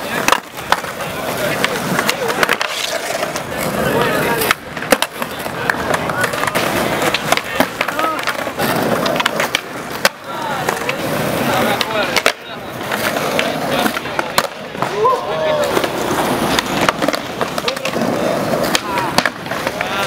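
Skateboards on concrete: wheels rolling, with repeated sharp clacks of tails popping and boards landing as skaters try flatground flip tricks, over the chatter of an onlooking crowd.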